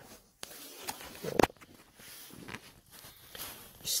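Faint rustling and handling noise, with small clicks and one sharper click about a second and a half in.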